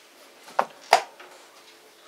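Two sharp wooden knocks about a third of a second apart, the second the louder: a wooden chess rook set down on the board and the chess clock pressed to end the blitz move.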